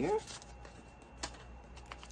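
Paper dollar bills being handled and sorted by hand: quiet rustling of the notes, with two crisp snaps, one about a second in and one near the end.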